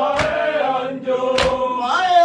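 Voices chanting an Urdu noha (Shia mourning lament) to a slow, held melody, with two sharp beats of matam (hand-on-chest striking) keeping time, about 1.2 s apart.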